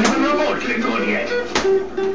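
Gemmy Dead Eye Pirate Drake animated pirate prop playing its sound routine: plucked-guitar music with speech over it, and a sharp click about one and a half seconds in.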